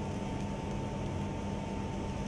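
Long wire sparkler burning with a steady fizzing hiss, over a faint steady tone.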